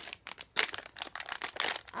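Plastic packaging crinkling as it is handled, an uneven run of small crackles.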